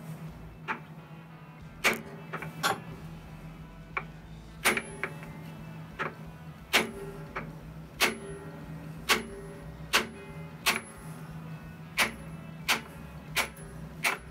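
Hammer striking a cold chisel set against the camshaft timing gear retaining nut of a Ford Model A engine, to drive the nut loose. Sharp metal-on-metal strikes come roughly once a second at an uneven pace, some ringing briefly.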